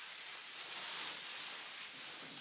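Soft rustling of a quilted puffer jacket being pulled on over the shoulders: a faint, even hiss that swells slightly about halfway through.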